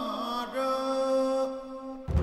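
Film soundtrack music: a solo male voice chanting, gliding down in pitch and then holding a long note that fades near the end.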